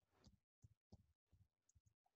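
Near silence: room tone with a few very faint, soft ticks.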